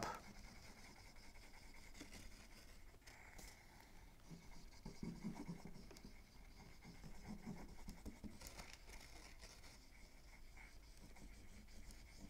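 Faint, irregular scratching of a liquid glue bottle's tip dabbing glue onto a cardstock envelope flap.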